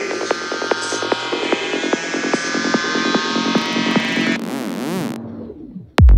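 Electronic dance music intro: layered synthesizer tones with scattered clicks, then a short burst of hiss and a wobbling synth tone that sinks in pitch and fades out just before the beat comes in.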